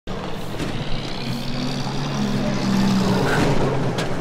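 A vehicle engine running with a steady low hum, getting louder over the second half as if coming closer.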